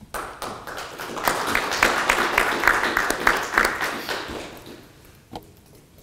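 Small audience applauding, swelling over the first second and dying away after about five seconds.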